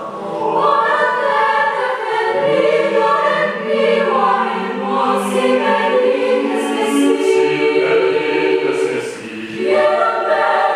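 Mixed choir of men's and women's voices singing sustained chords in several parts, with a short break between phrases just before the end.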